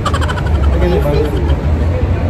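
Steady low rumble with a child's voice and background chatter over it; a brief rapid crackle of clicks in the first half-second.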